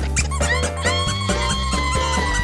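Amazon parrot giving a long, high call that rises in and is held from about a second in, over background music with a steady bass.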